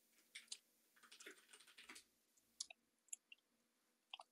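Near silence with faint, scattered keyboard typing and clicks, a cluster of keystrokes about a second in and a few single clicks near the end.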